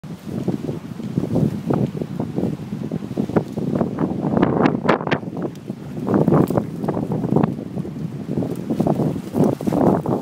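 Gusty wind buffeting the microphone, rising and falling irregularly, with scattered sharp clicks and knocks through it.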